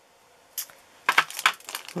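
Short crinkling and clicking of plastic being handled, once about half a second in and then in a quick cluster about a second in.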